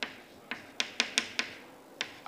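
Chalk tapping and clicking on a blackboard as figures are written: about six short, sharp taps over two seconds.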